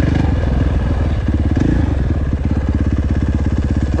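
KTM four-stroke motocross bike engine running under light throttle, then easing off to a slow, lumpy low-rev beat about halfway through as the bike rolls to a stop.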